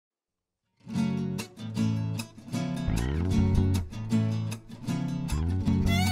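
Nylon-string acoustic guitars playing a rhythmic strummed chord introduction, starting about a second in.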